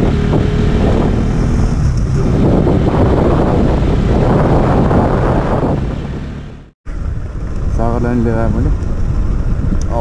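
Bajaj Pulsar NS200 single-cylinder engine running under way, mixed with wind rushing over the microphone while riding. The sound cuts out for a moment about seven seconds in, then the riding noise picks up again.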